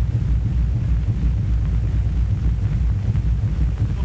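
A burning car wreck engulfed in flames: a steady, dense low rumble of fire.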